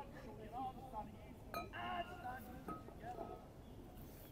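Voices of people talking, with one longer drawn-out call near the middle, and a sharp click about one and a half seconds in.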